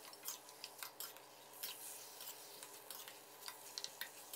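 Faint, irregular clinks and scrapes of a stainless steel ladle against a metal wok as marinated pork rib pieces are stir-fried.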